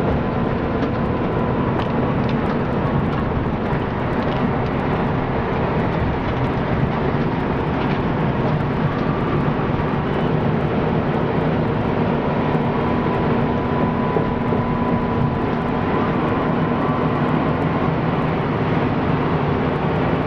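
Bus engine and tyre and road noise heard from inside the cab as the bus drives along at a steady pace. The sound is a steady, even hum with a faint high whine running through it.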